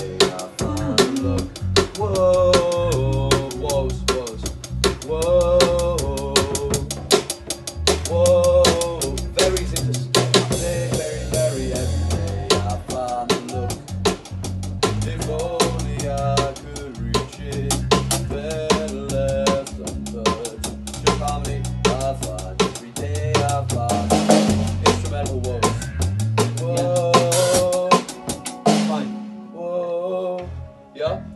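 Rock band playing through a song on a drum kit, with constant snare, bass drum and cymbal hits over held bass notes and a melody line. The drums stop about a second before the end, leaving a bass note ringing.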